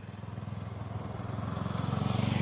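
Motorcycle engine running with a steady low, rapidly pulsing note that grows gradually louder.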